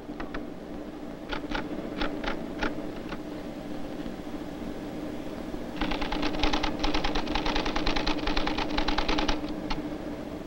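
An IBM 1440 console typewriter: a handful of separate keystrokes as an account-number inquiry is keyed in, then, a few seconds later, a rapid run of strikes, about ten a second, as the system types out its reply. A steady low hum runs underneath.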